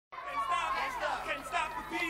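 A murmur of several voices talking at once over a steady low hum.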